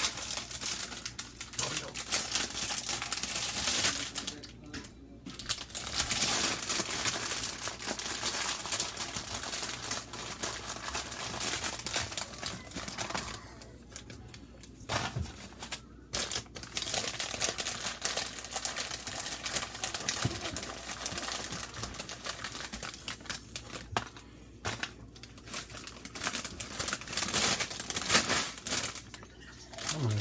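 Plastic chip bag crinkling and rustling as it is handled and chips are shaken out onto a plate. It goes on in spells, with a few short pauses.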